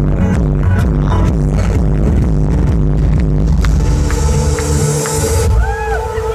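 Loud electronic dance music from a DJ set over a big sound system, with a driving, pulsing bass line. From about halfway through, a rising hiss builds over the beat and cuts off suddenly near the end, where held synth tones come in.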